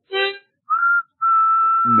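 A brief reedy musical note, then two whistle toots at the same high pitch, a short one and then a longer one of almost a second.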